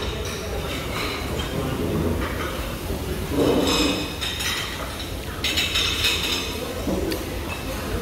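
Restaurant dining-room background: a steady hum with occasional clinks of dishes and cutlery.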